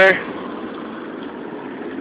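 A car driving, a steady hum of engine and road noise with no other events.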